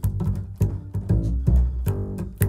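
Upright bass played pizzicato, heard through a small-diaphragm condenser mic close to the bridge and fingerboard: a steady run of plucked notes, about three a second, with the snapping of the fingers against the fingerboard audible.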